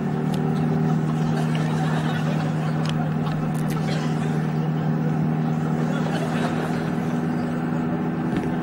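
Steady drone of a classic Mini's engine running at an even road speed, heard from inside the cabin. A few light ticks of the paper stamp booklet being handled in the first half.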